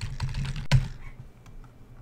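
Typing on a computer keyboard: a quick run of keystrokes, with one sharper, louder key press a little under a second in.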